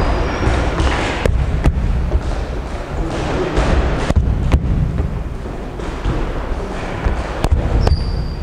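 Footwork on a wooden gym floor: sneakers stepping and shuffling as a boxer steps into her punches, with a few sharp knocks over a steady background noise.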